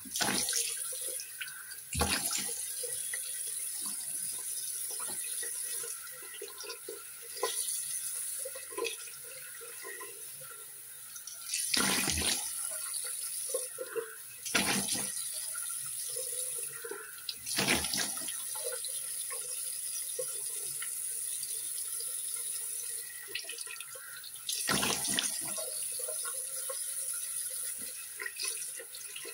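Tap water running steadily into a sink while a person splashes it onto their face to rinse off a face mask, with several louder splashes at irregular intervals.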